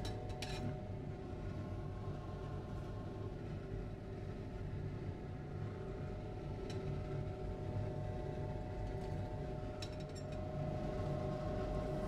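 Light glass clinks as a glass watch-glass cover is set on the rim of a glass beaker, the clearest about half a second in and a few fainter ones later, over a steady low hum.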